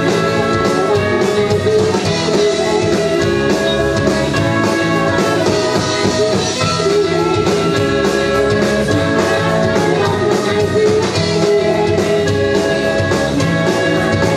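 A live rock band playing on stage: electric guitars, bass, keyboard and drums with a trumpet and trombone section carrying held notes over the band.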